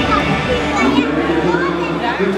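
Crowd of many voices talking and calling out at once in an arena.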